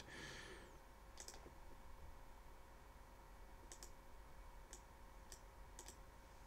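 Computer mouse clicking: a handful of separate single clicks, spaced unevenly, against near silence.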